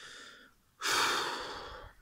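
A man breathes in softly, then lets out a heavy sigh starting just before a second in: a loud breathy exhale that fades away.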